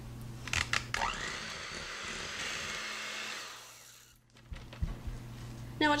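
Electric hand mixer with regular beaters whipping mascarpone into whipped heavy cream. A few clicks, then a steady whir for about three seconds that fades and stops about four seconds in, followed by a couple of light knocks.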